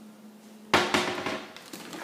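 Wooden kitchen cabinet door swung shut. It knocks sharply against the frame about three-quarters of a second in, with a second knock right after and a lighter one near the end.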